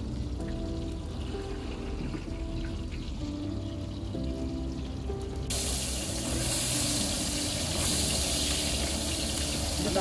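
Background song plays throughout. About halfway through, sliced onions are dropped into hot oil in a large metal pot, and a loud, steady sizzle starts suddenly.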